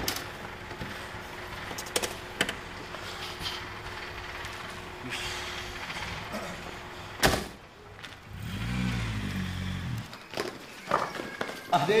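Taxi door and body knocks as a heavy man gets out of a car, with a loud car-door slam about seven seconds in, followed by a brief low rumble; speech starts near the end.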